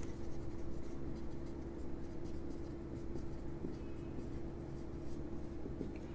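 Marker pen writing on a whiteboard: faint, irregular scratching and squeaking strokes as words are written, over a steady low hum.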